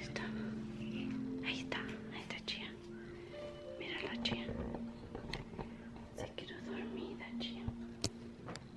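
Quiet whispered speech over faint background music made of long held notes.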